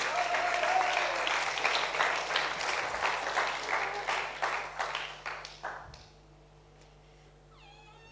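Audience applauding, with a few high whoops near the start. It fades out about six seconds in.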